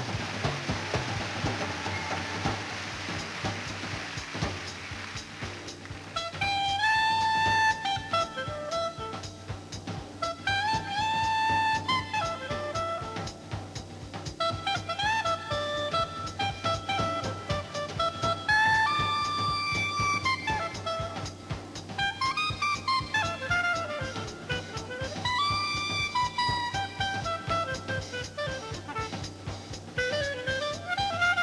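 Applause fading over the first few seconds. Then a swing-jazz clarinet solo over a steady drum-kit beat, with long held high notes and quick runs. One run sweeps down and back up about three-quarters of the way through.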